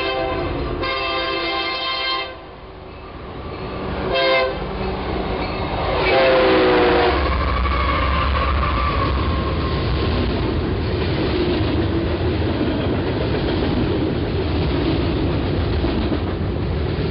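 Union Pacific freight locomotive's air horn blowing a long blast, a short one and a final blast that drops in pitch as the locomotive passes close by, the long-long-short-long pattern of a grade-crossing warning. The locomotive and a string of loaded lumber flatcars then roll past, a steady loud rumble with wheel clatter.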